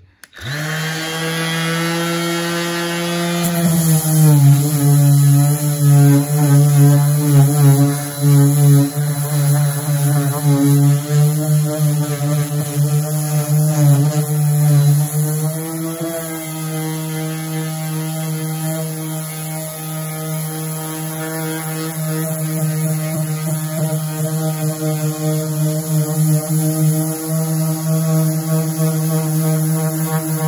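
Cordless random orbital sander with 120-grit paper starting up and running with a steady hum. About three and a half seconds in it is pressed onto the wood: its pitch drops a little and the sound grows louder and rougher as it sands.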